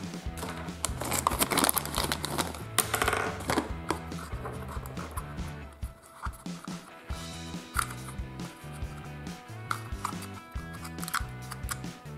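Background music with a steady repeating bass line, over which plastic clicks and snaps come from the parts of a Legend of Animals Dino Animal Tech transforming dinosaur egg toy being folded and pressed together by hand.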